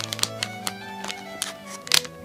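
A thin metal skewer jabbing at and crinkling a plastic blind-bag toy packet to pierce it, giving a string of sharp clicks and crackles, the loudest near the end. Violin music plays under it.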